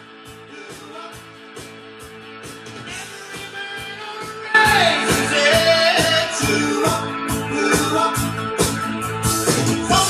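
Music with singing played from a vinyl record on a Dual 1241 turntable: it starts quietly, builds, then comes in loud with a singing voice about four and a half seconds in.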